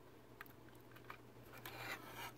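Near silence with faint handling noise: a couple of small clicks and a soft rub near the end, over a steady low hum.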